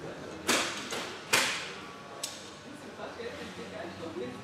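Two sharp bangs about a second apart, the second the louder, then a fainter third about a second later, over background voices.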